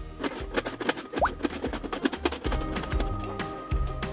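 Background music with a steady bass, over a quick run of sharp clicks and scrapes from red cabbage being pushed across a mandoline slicer's blade into a plastic box.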